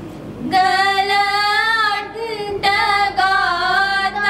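A high solo voice singing a slow melody in long held notes with vibrato; a new phrase begins about half a second in after a brief pause.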